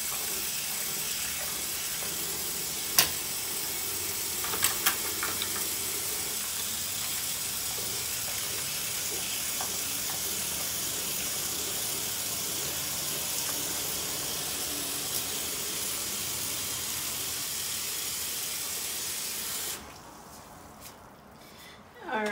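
Bathroom sink tap running in a steady stream as metal lash tools are rinsed under it, with a sharp click about three seconds in and a few light clicks soon after. The water is turned off near the end.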